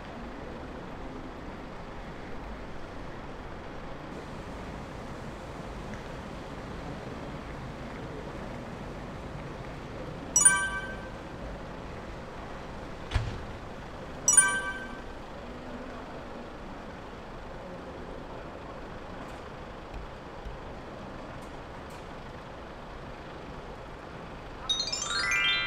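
Steady background noise of a parking lot with vehicles around. Two short, sharp ringing sounds come about four seconds apart, with a dull thump between them.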